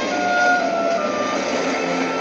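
Freight train rolling past with a steady rattling noise, under held orchestral string notes from a film score that change pitch partway through.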